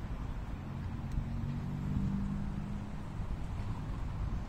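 Steady low rumble of road traffic, with a vehicle's engine hum swelling and fading about two seconds in.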